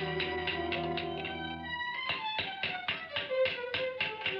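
Hammering: rapid, even taps about five a second, over background music with held notes.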